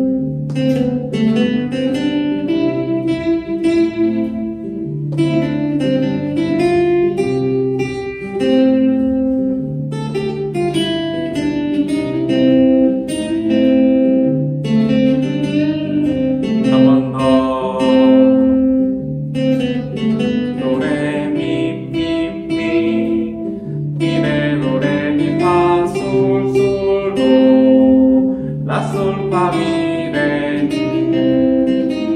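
Acoustic guitar playing an improvised single-note melody, with slides and bends, over a repeating backing chord progression and bass line.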